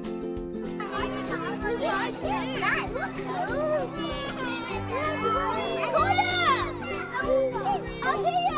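Young children's voices shouting and chattering at play, starting about a second in, over background music with steady held notes.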